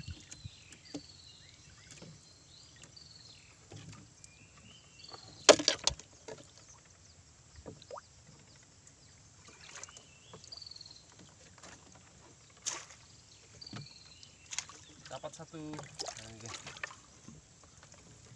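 Wire-mesh crab trap being handled in a wooden boat: scattered knocks and rattles of the trap against the hull, the loudest clatter about five and a half seconds in, with another sharp knock later. Repeated short, high, falling chirps sound in the background.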